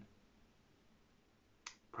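Near silence: room tone, broken by a single brief mouth click near the end.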